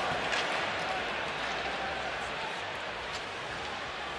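Hockey arena crowd murmur carried on the game broadcast, a steady wash of noise that eases slightly, with a faint click or two from the ice.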